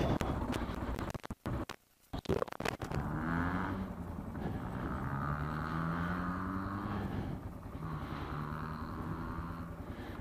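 Motorcycle engine running under way, with road and wind noise; its note rises slowly, drops back about three-quarters of the way through and then holds. The sound cuts in and out during the first two seconds or so.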